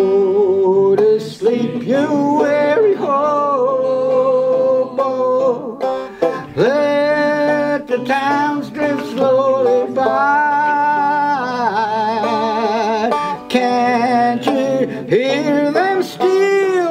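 A banjo played as accompaniment to a slow folk song, with a man singing the chorus; held notes waver with vibrato.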